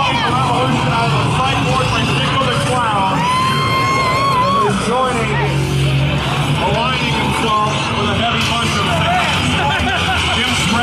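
Wrestler entrance music playing loudly over a PA, with a sung or held voice note around the middle, mixed with people calling out and chattering.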